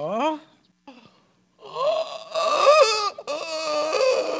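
A woman's long, wavering wail, its pitch rising and falling, starting about one and a half seconds in after a brief pause.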